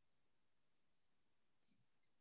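Near silence on a video call, with a faint short noise near the end.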